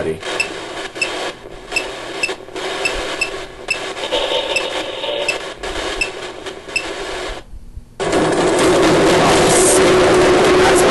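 Phone ghost-hunting app playing a steady radio-static hiss with regular faint blips. About seven and a half seconds in it cuts out, and half a second later a louder steady noise with a low hum starts from the phone.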